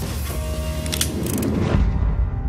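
Mechanical clicking transition sound effect: a sharp click about a second in, then a quick run of clicks, ending in a low heavy hit, over a steady music bed.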